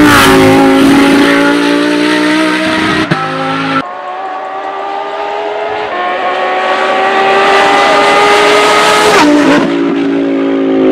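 Lamborghini Huracán Super Trofeo Evo's naturally aspirated V10 racing engine at high revs, loud as the car passes close. It then sounds further off, its revs climbing steadily and getting louder, until the pitch drops sharply near the end at a gear change.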